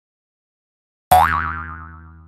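A cartoon spring 'boing' sound effect about halfway in: a sudden twang whose pitch sweeps up and then wobbles as it fades, over a low steady tone.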